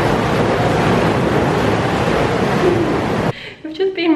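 Spa pool water jets churning the water: a loud, steady rush of bubbling water that cuts off abruptly about three seconds in.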